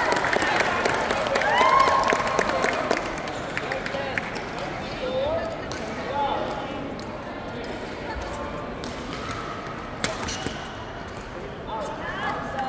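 Badminton play in a large echoing hall: sharp racket hits on the shuttlecock from several courts and shoes squeaking on the court floor, over the voices of players and spectators. It is loudest in the first two seconds.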